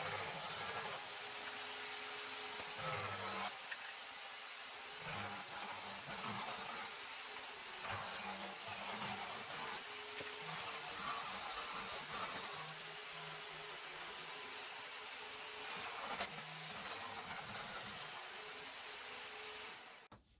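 Electric jigsaw mounted in a homemade saw table, running steadily as its blade cuts 10 mm plywood blanks.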